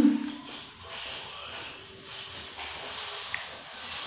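A short hummed "mmm" of enjoyment at the very start, then quiet mouth sounds of chewing soft, springy jelly pudding over a steady faint hiss.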